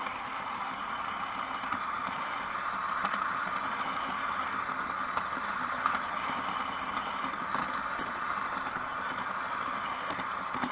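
Large-scale garden model train running along outdoor track, a steady hum from its motor and gearing with faint scattered clicks and rattle from the wheels on the rails.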